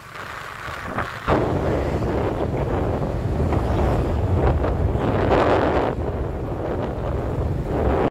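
Wind buffeting the microphone of a camera moving along a road, over the rumble of traffic. The wind noise jumps suddenly louder a little over a second in and stays there.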